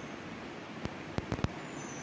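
Steady background noise with a few short soft clicks a little after the middle.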